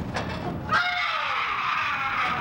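A sudden high-pitched, drawn-out shriek of a human voice breaking out about three-quarters of a second in and carrying on.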